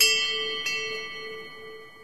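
A bell-like chime struck once, with a second lighter strike about two-thirds of a second in, ringing on several tones and fading away.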